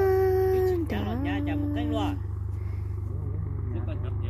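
A person's voice calling out in long, drawn-out held tones, two calls in the first two seconds, over a steady low engine hum.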